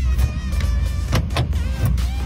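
Background music over a steady low rumble, with a few short clicks as a freshly cut key is slid into a Fiat Boxer's door lock cylinder.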